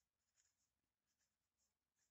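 Near silence with a few short, faint scratches of a pen writing on paper.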